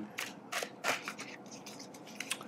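A large deck of oracle cards being shuffled by hand: a string of faint, irregular card snaps and slaps.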